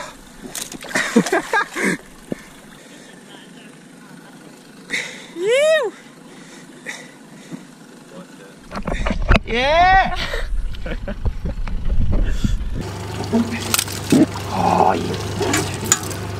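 Water splashing and knocks around the ski tubes, then two rising-and-falling wordless shouts, then a boat engine idling steadily from about thirteen seconds in.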